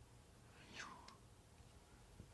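Near silence: room tone, with one faint, brief swish just under a second in.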